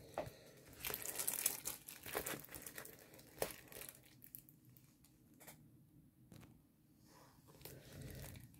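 Crinkling and rustling of a plastic-covered diamond painting canvas being handled and turned, with a few sharp crackles, busiest in the first few seconds and thinning to faint rustles after about four seconds.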